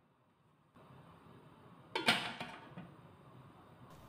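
Aluminium lid set down on an aluminium cooking pot: one brief metallic clatter about two seconds in, with a lighter second touch just after, dying away quickly.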